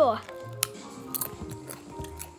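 Background music with steady held notes, and a sharp click a little after half a second in.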